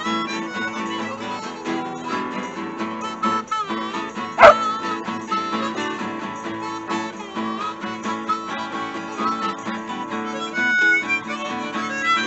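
Harmonica playing over two strummed acoustic guitars in an instrumental break of a blues-R&B tune. A single short, loud dog bark cuts in about four and a half seconds in.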